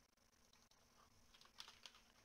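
A few faint computer keyboard keystrokes in the second half, otherwise near silence.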